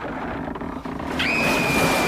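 Radio-drama sound effects of a pony and trap foundering in quicksand: a steady wash of noise, and about a second in a high, held cry.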